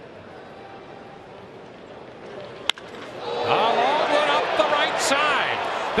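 Ballpark crowd murmuring, then the sharp crack of the bat meeting the pitch about two and a half seconds in, followed by the crowd swelling into loud cheering and shouting as the home run flies toward the stands.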